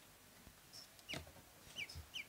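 Ducklings peeping faintly: a few short, high peeps, each sliding down in pitch, in the second half, with a soft tap about a second in.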